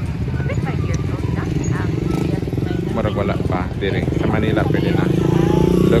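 Small motorcycle engine running close by, getting louder near the end, with the chatter of a crowd of voices over it.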